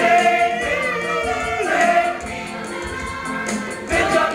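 Stage chorus of young voices singing a calypso-style song with musical backing. The sound drops in loudness about halfway through and swells again near the end.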